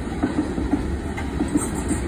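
Freight train tank cars rolling past at a grade crossing, a steady low rumble of wheels on rail.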